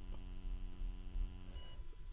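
Steady electrical hum, a low buzz with a stack of even overtones, that cuts off about one and a half seconds in.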